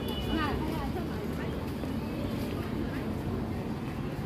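Outdoor urban ambience: a steady low rumble with brief snatches of passers-by's voices, most plainly in the first half-second.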